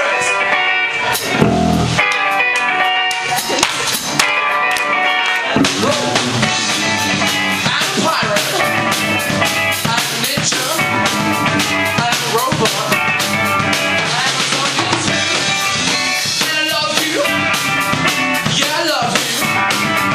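A live band playing: electric guitars through amplifiers and a drum kit, loud and steady.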